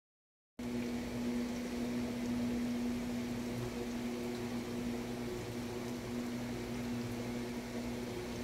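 Steady low hum of a running kitchen appliance motor, starting about half a second in.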